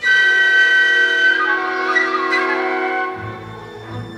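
Orchestral film score music: a loud held chord enters suddenly, with an upper line moving through the middle, and a low bass part comes in about three seconds in.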